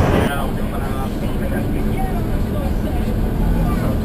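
Public bus engine and road noise heard from inside the cabin, with faint voices of passengers in the background. The noise changes abruptly about a third of a second in.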